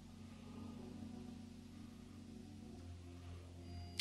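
Faint background music: soft, sustained low chords held steadily.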